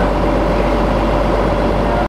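Steady mechanical rumble with a constant hum, unchanging throughout, like an engine idling.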